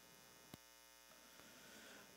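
Near silence: a faint steady electrical hum, with one faint click about half a second in.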